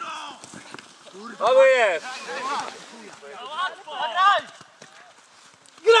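Voices shouting across a football pitch: a loud "O!" about a second and a half in, then several shorter calls a couple of seconds later.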